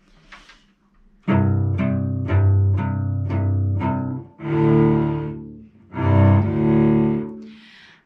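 Cello bowed in double stops, two strings sounding a fifth together. Starting about a second in, it plays about seven short detached strokes, then two long held notes.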